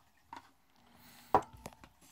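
Hard parts of a water-heater conversion kit handled on a tabletop: a faint click, then one sharp knock about a second and a half in as a piece is set down on the table.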